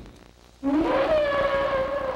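Whale call used as a source sound for the brachiosaurus voice: starting about half a second in, one long call that slides up in pitch and then holds a steady note.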